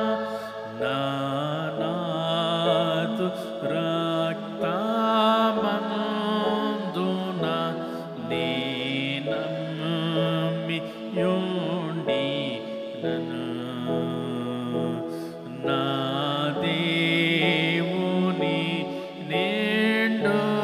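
A man singing a slow devotional song solo into a microphone, in long held, gliding notes with short breaths between phrases.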